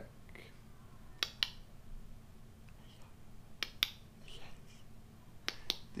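Three pairs of sharp clicks, about two seconds apart, over a faint steady room hum.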